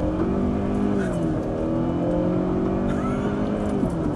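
2014 Ford Mondeo's 2.0-litre turbocharged petrol engine (240 hp) accelerating hard, heard from inside the cabin. Its note climbs, drops about a second in as the automatic gearbox shifts up in sport mode, then climbs again and drops near the end at the next upshift.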